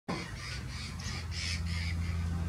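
A bird giving a quick series of about six harsh, raspy calls, roughly three a second, over a steady low hum.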